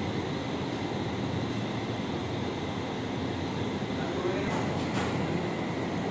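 Steady machinery noise, an even rumbling hiss with no rhythm, from dairy equipment such as a bulk milk cooler running.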